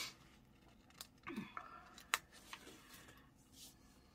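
Faint handling of metal tweezers and a sticker sheet as a sticker is peeled off and laid on a paper planner page: soft paper rustling with a couple of sharp clicks, about one and two seconds in.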